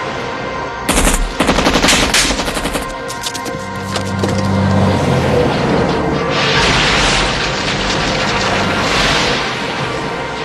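Film soundtrack of music with a burst of rapid, gunfire-like cracks starting about a second in and lasting about two seconds. A loud rushing noise follows in the second half.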